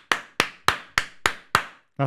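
One person clapping slowly and evenly, about six claps at roughly three a second, applauding a goal.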